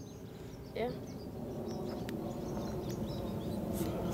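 Outdoor background of a steady low rumble that slowly grows louder, with faint bird chirps and a single sharp click about two seconds in.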